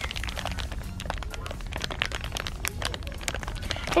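Clear plastic packaging of a squishy toy crinkling as hands squeeze the toy through the bag: an irregular run of small crackles and clicks.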